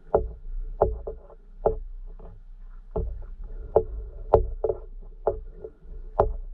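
An irregular series of sharp knocks, about a dozen in six seconds, each with a short hollow ring, picked up by a camera sealed in an underwater housing. The loudest knock comes a little past the middle.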